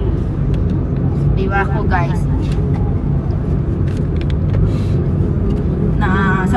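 Steady low road and engine rumble inside a moving car's cabin, with a brief high vocal sound about a second and a half in and a few faint clicks.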